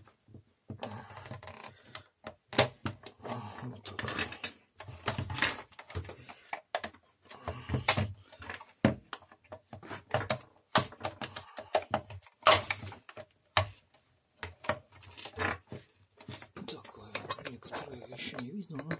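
Plastic housing of a hand mixer being handled and pried apart: irregular sharp clicks and knocks as its snap latches are worked loose, with rubbing and handling noise between them.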